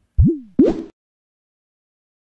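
Cartoon sound effect: two quick pops with sliding pitch in the first second. The first shoots up and then slides down, and the second shoots up.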